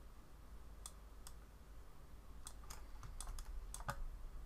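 Faint, scattered clicking of a computer keyboard as the 3D sculpting software is worked: about nine separate clicks, a couple early and the rest bunched together near the end.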